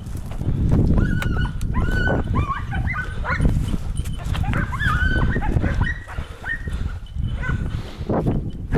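Hunting dogs giving short, pitched yelps in quick succession, typical of hounds on the trail of a hare. The yelps start about a second in and die away near the end, over low rustling of footsteps through dry scrub.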